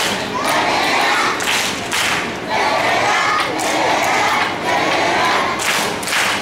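A class of young children singing or chanting together in unison, in phrases about a second long with short breaks between them, and thumps mixed in.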